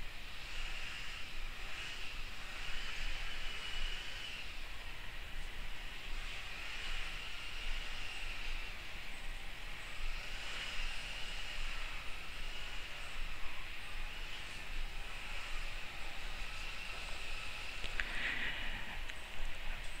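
Paintbrush bristles dabbing and scrubbing acrylic paint on mixed-media paper, laying snow onto painted pine branches: soft, scratchy brush strokes that come and go every second or two.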